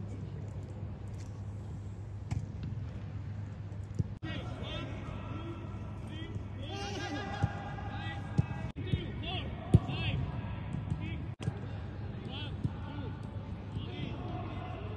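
Footballs being kicked in a passing drill: about half a dozen sharp thuds at irregular intervals, the loudest near the end of the middle stretch, with players shouting and calling to one another over a steady low hum.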